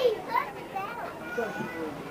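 Young children's high voices calling and chattering, with no clear words, and other voices around them.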